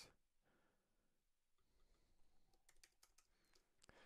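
Near silence, with a few faint computer keyboard key clicks near the end as a short word is typed.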